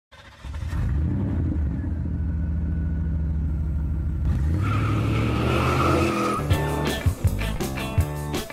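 Car engine sound effect under a logo intro: a steady engine note steps up in pitch about four seconds in, with a high tyre squeal over it. About six and a half seconds in, rock music with drum hits begins.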